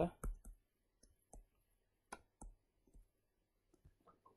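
Stylus clicking against a tablet screen while handwriting: a series of short, irregularly spaced light clicks.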